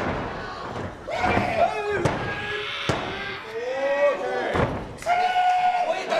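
Several sharp thuds and slaps on a wrestling ring's canvas as wrestlers grapple on the mat, mixed with shouting voices.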